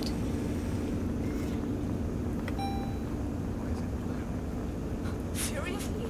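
A steady low hum, like a machine running, with a short electronic beep about two and a half seconds in.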